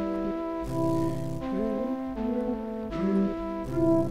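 Synthesised flute melody from FL Studio's Sytrus FM flute preset, played on a MIDI keyboard: layered flute-like notes changing every half second or so, with one short bend in pitch about a second and a half in, over a low bass line.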